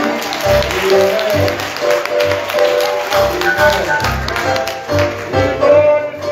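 Live church music with a steady beat: low bass notes pulsing about twice a second under held chords.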